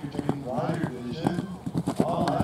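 Hoofbeats of a horse cantering on sand arena footing, several dull strikes in an uneven rhythm, with people's voices talking over them.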